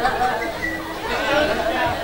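Chatter of several overlapping voices, with no one voice standing out clearly.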